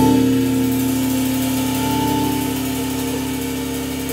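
Electric organ and band holding the final sustained chord of a jazz tune. It is one steady chord that slowly fades.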